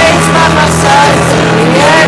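Live pop-rock ballad: upright piano accompaniment under a held, wordless vocal line that dips and rises near the end.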